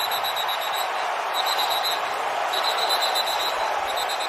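Steady stadium crowd noise, with officials' whistles blowing several short trilled blasts to whistle the play dead over a fumble pile-up.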